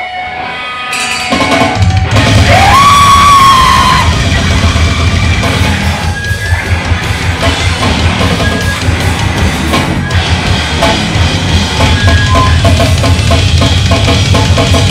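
Live hardcore band starting a song: electric guitar and drum kit come in loud about a second in and play on together, with a long held note that rises and then holds steady a second later.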